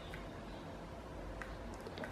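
Low room tone with a few faint, light clicks as a hand grips and turns the fan's plastic blade-retaining cap on its hub.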